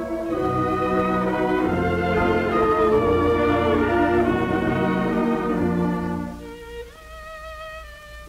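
Large dance orchestra playing an instrumental waltz passage from a 1935 shellac 78 record, with bowed strings prominent. About six seconds in, the full band drops away to a quiet, thin passage of a few held high notes.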